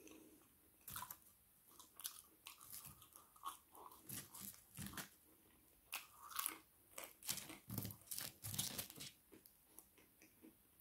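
Close-miked chewing of soft steak-cut chips: a faint, irregular run of mouth clicks and smacks from about a second in.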